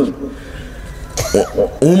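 A man coughs once, briefly, about a second in, in a short pause between phrases of a man's speech.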